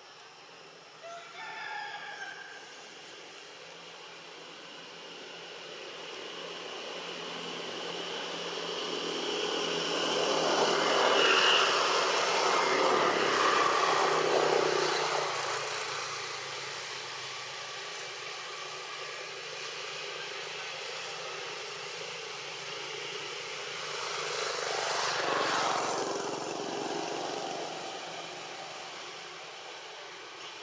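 Engine noise of something passing by: it swells slowly to a peak about ten to fourteen seconds in and fades, then a second, smaller pass comes about twenty-five seconds in. A few short, high calls come about a second in.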